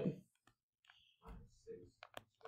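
Stylus clicking and scratching faintly on a tablet screen as handwriting is written, between short faint murmured words.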